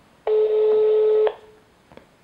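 One ring of the ringback tone on an outgoing phone call: a steady beep about a second long, heard through the narrow sound of a phone line. The other end is ringing and has not yet answered.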